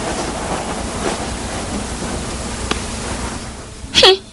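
A steady rushing noise from the film's soundtrack, with a few faint clicks, easing off shortly before the end and cut off by a short sharp sound at the very end.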